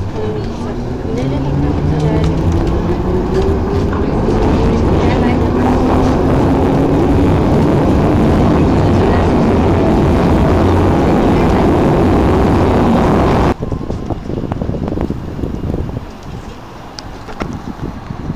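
London Underground train pulling out of a station, its motors whining steadily higher in pitch as it picks up speed over a loud, steady rumble. About 13.5 s in the sound cuts off abruptly and a much quieter outdoor background follows.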